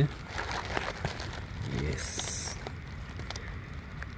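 Quiet background with scattered faint clicks and rustles. A short murmured voice comes a little under two seconds in, followed by a brief hiss.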